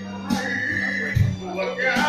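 Amplified music played over a PA: a backing track with a steady bass beat and a held high note, with a man singing into a microphone.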